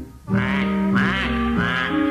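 Backing music of a children's alphabet song with three short duck quacks over it, each a quick call that rises and falls in pitch, echoing the duck's 'quack, quack' in the lyric.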